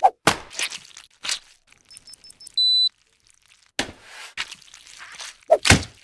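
Thuds and knocks of a giant red gelatin gummy block, its mold and a metal tray being handled and set down on a counter, loudest near the end. In a quiet gap in the middle, a few faint high ticks and then one short high electronic beep.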